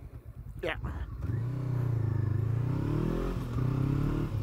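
Honda CBR500R parallel-twin engine, low for about a second after a practice emergency stop, then pulling away with rising revs and a gear change about three seconds in.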